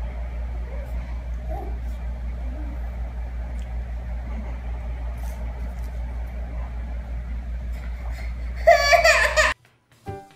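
A steady low hum with faint room noise, then a baby's loud, brief laugh near the end, cut off suddenly.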